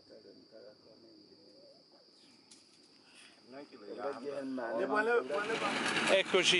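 Steady, high-pitched insect chirring over faint voices, quiet at first. From a little past the middle, voices grow louder, and near the end the chirring stops as louder outdoor noise and talk take over.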